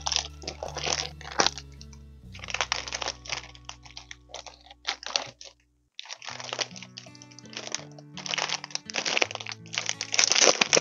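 Clear plastic wrapping on a ring-bound template binder crinkling and crackling in bursts as it is handled and turned over, over background music with steady low notes. The sound cuts out completely for a moment just before the halfway point.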